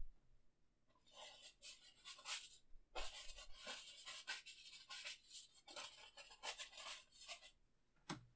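Fan brush loaded with oil paint dabbing and scrubbing cloud shapes onto a wet canvas: a quiet run of short, scratchy bristle strokes that starts about a second in, pauses briefly, and carries on until just before the end.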